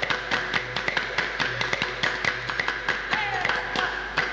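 A group clapping their hands in a fast, even beat, several claps a second, over music with held tones.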